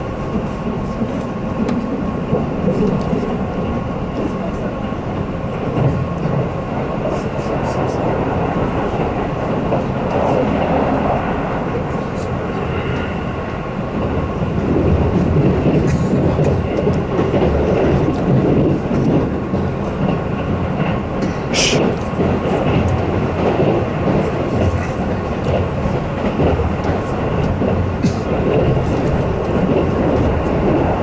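Running noise inside a Keihan Main Line train's passenger car at speed: a steady rumble of wheels on rail, getting louder about halfway through. A brief high squeal comes a little past two-thirds of the way.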